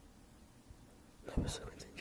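Quiet room tone, then a man's short breathy, whispered vocal sound about a second and a half in.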